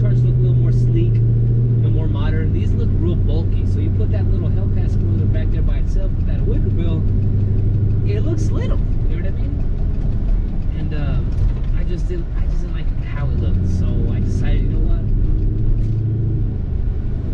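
Steady low hum of a car's engine running, with a person's voice talking over it.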